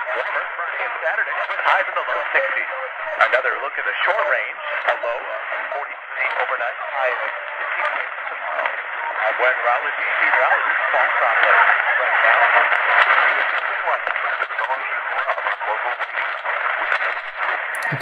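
Vigurtime VT-16 kit radio playing an AM broadcast station near the top of the medium-wave band, a talking voice coming through its small speaker thin and without bass.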